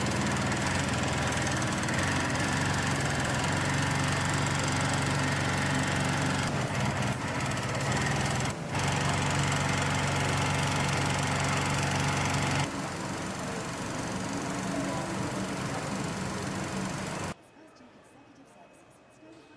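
Industrial sewing machine running fast as it stitches leather: a steady motor hum with rapid needle clatter. It breaks off for a moment near the middle, runs on more quietly in the later part, and stops shortly before the end.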